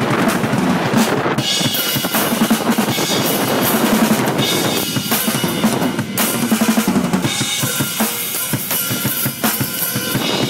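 Acoustic drum kit played continuously in a busy beat: quick snare and bass-drum strokes with cymbals ringing over them.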